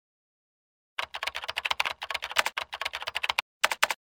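Rapid typing on a computer keyboard: a quick run of keystrokes starting about a second in, a short pause, then a few last keys near the end.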